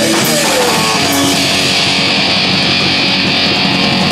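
Punk rock band playing live and loud: distorted electric guitar, bass guitar and drums, with a steady cymbal wash coming in about a second in.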